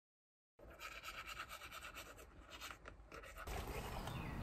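Complete silence for about half a second, then faint, scattered rustling and scratching sounds close by, with a low steady hum coming in near the end.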